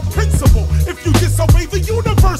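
Hip hop song: a rapper's voice over a deep bass line and a drum beat.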